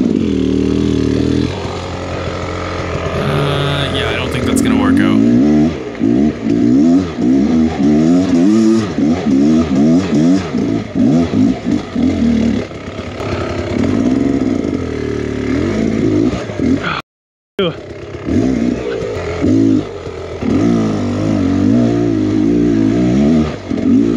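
Beta X Trainer 300 two-stroke dirt bike engine revved in short throttle bursts, its pitch rising and falling over and over as the bike is worked up over roots and rock. The sound drops out completely for about half a second around seventeen seconds in.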